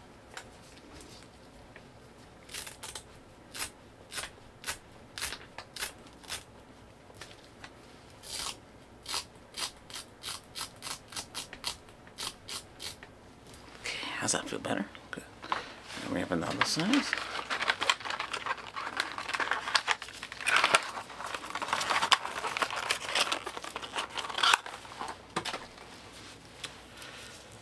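Crinkling, crackling and tearing from a splint and its wrapping being handled close to the microphone. Separate sharp crackles come first; from about halfway through, the crinkling and tearing is denser and louder.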